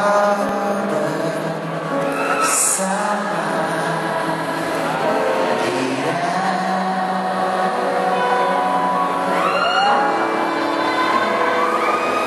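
Live band music: a male vocalist singing sustained, gliding notes into a microphone over electric guitar and drums, heard through the hall's sound system from among the audience.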